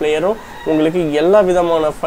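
A man's voice talking, with a short pause about half a second in.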